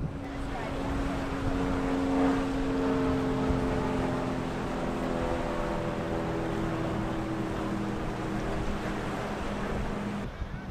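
A center-console catamaran running through the inlet under outboard power: a steady engine drone that sinks slightly in pitch as the boat goes by, over wind and water noise.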